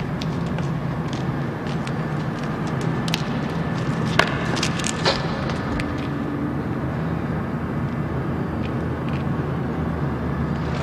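A steady low mechanical hum, with a few sharp clicks and knocks, the clearest about four and five seconds in.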